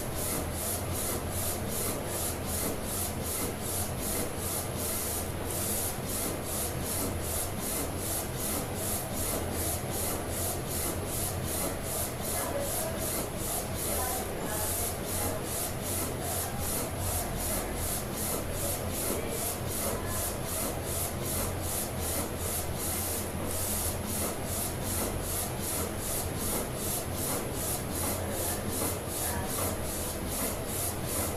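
A3 direct-to-garment inkjet flatbed printer printing: the print-head carriage shuttles back and forth over the platen with an even, fast pulsing over a steady low hum.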